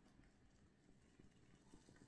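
Near silence: faint room tone with a few soft ticks in the second half.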